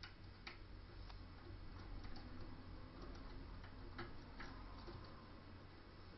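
Faint, irregular small metal clicks of a half-diamond pick working the pin stack of a five-pin deadbolt under a tension wrench, feeling for pins to set.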